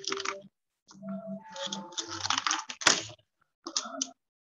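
Irregular clicking and clatter of computer keyboard typing heard over a video call, with a sharp, loud click about three seconds in. Faint voices underneath.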